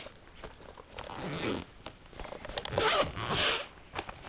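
Zipper of a fabric brush case being pulled open, two rasping strokes, the second longer.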